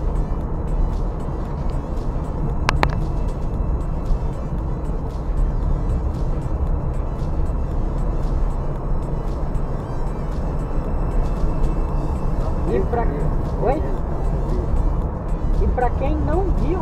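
Steady road and engine rumble inside a moving car's cabin, heaviest in the low end, with a brief sharp tick about three seconds in.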